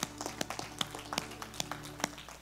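Congregation applauding: scattered, irregular hand claps in a large room.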